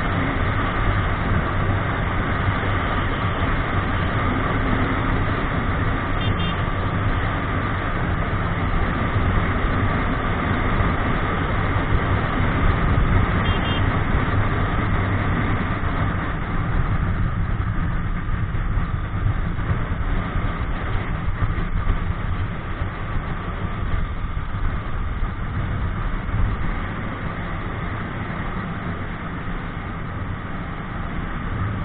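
Motorcycle riding at a steady cruising speed: its engine runs evenly under a continuous rush of wind and road noise on the bike-mounted camera.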